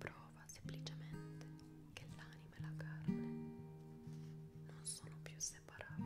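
Background acoustic guitar music, plucked notes over a low note repeated about twice a second, with a soft whispered voice coming in now and then.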